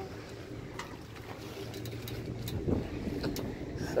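Low, steady outdoor rumble with a faint hum, a few faint clicks, and a brief faint voice about three seconds in.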